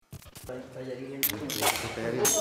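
Indistinct voices, low and unclear, with several sharp clicks: a cluster in the first half second and a few more just after the middle.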